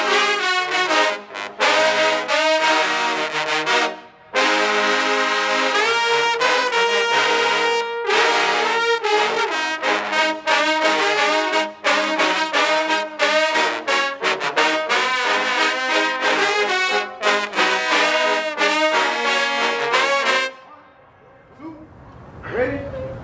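Trombone choir playing a fanfare together: loud held chords broken by short detached notes and a few brief pauses, ending with a cutoff near the end.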